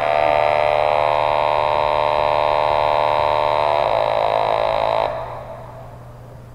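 Buzzing electronic tone from a simple oscillator circuit whose current runs through a hand-drawn graphite pencil line between copper strips, played through a small speaker. It holds steady, then fades and cuts off about five seconds in as the line is broken and the circuit opens.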